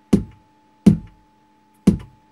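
Vermona Kick Lancet analog kick drum synthesizer firing three kick hits about a second apart, each a sharp attack with a short, deep decay. Its pitch knob is being turned as it plays, and a small turn changes the sound sharply.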